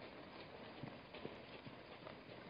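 Faint, irregular hoofbeats of a wildebeest herd running over the ground.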